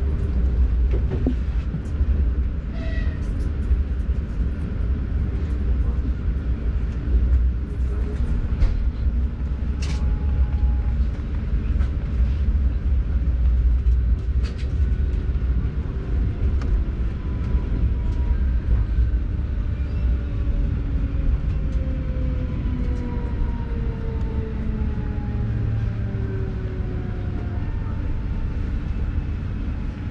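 ES2G Lastochka electric train heard from inside: a steady low running rumble with a few sharp clicks. In the second half several motor whines fall slowly in pitch as the train brakes for a station stop.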